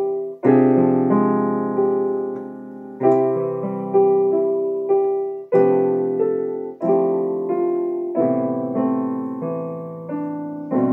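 Digital piano playing a slow solo piece: chords struck about once a second, each left to ring and fade before the next.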